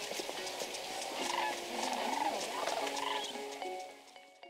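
A flock of sandhill cranes calling, their rattling calls coming in scattered bursts, fainter than just before. Steady music tones come in underneath and grow toward the end.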